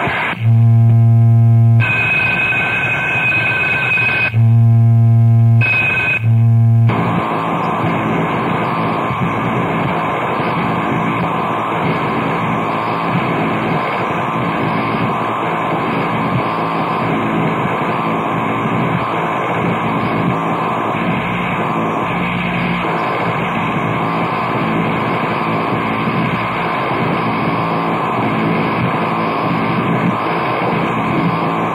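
Live industrial noise music taken straight off the soundboard. Three loud, low buzzing drones blast in during the first seven seconds, then a dense, steady wall of harsh noise carries on unbroken.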